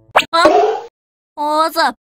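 A short pop just after the start, then a cartoon boy's breathy, startled gasp and a brief wordless vocal exclamation about halfway through.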